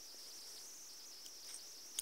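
Very faint room tone: a steady, thin high-pitched drone with nothing else standing out.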